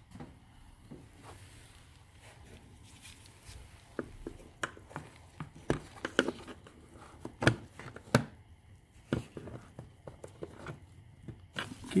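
Scattered clicks and taps of a pick tool working at a plastic retaining clip on a car's cowl panel. The clicks come more often from about four seconds in.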